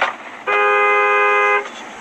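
Car horn sounded once, a steady two-tone blast lasting about a second, as a warning to a tractor that has failed to give way.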